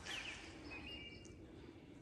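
Faint bird calls: two short falling chirps near the start, then a longer steady note about a second in.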